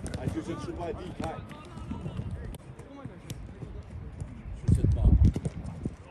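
Footballs being kicked in a passing drill on grass: scattered sharp knocks of boots striking the ball, amid players' voices. A low rumble about five seconds in is the loudest moment.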